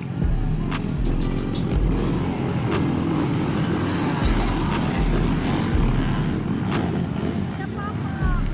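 A pack of motocross dirt bikes passes with engines running hard, a dense steady roar, mixed with background music.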